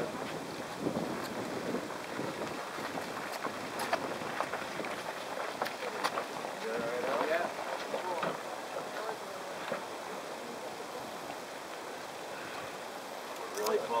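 Faint, scattered talk of several people, with wind on the microphone and a few light knocks.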